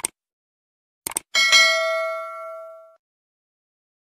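Subscribe-button sound effect: a short click, a double click about a second in, then a bright bell ding that rings out and fades over about a second and a half.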